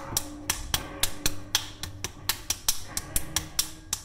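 A rapid, even run of sharp smacks, about six a second, with faint held low tones underneath.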